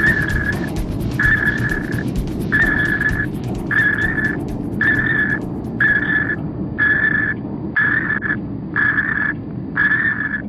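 A high electronic beep repeating about once a second, each beep about half a second long, the beeps coming slightly faster toward the end, over a continuous low rumble.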